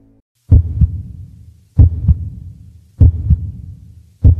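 Heartbeat sound effect: three low double thumps, lub-dub, about one and a quarter seconds apart.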